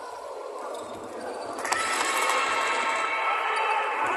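Game noise of basketball play in a large, echoing hall: players running on a wooden court, with the general noise rising suddenly about a second and a half in and staying up.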